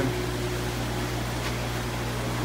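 A steady low machine hum under a faint even hiss, with a faint higher tone that stops a little over a second in.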